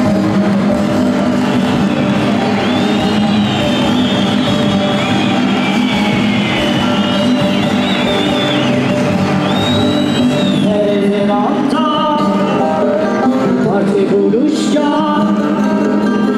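Live folk music from a band of bağlamas and acoustic guitars, with voices singing along, heard as a camcorder recording of a concert in a large hall.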